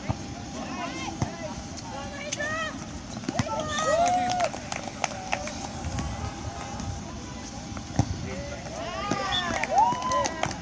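Volleyball players and onlookers shouting short calls during a rally, the calls rising and falling in pitch and bunching up around the middle and near the end. A few sharp slaps of hands on the volleyball stand out, one about eight seconds in.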